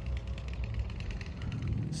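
A vehicle engine idling, a steady low rumble.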